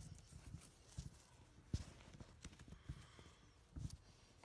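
Faint, irregular knocks and bumps, five or six in all, the loudest a little under two seconds in and another near the end.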